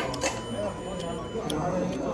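Low chatter of diners in a busy restaurant, with a few light clicks and clinks of tableware.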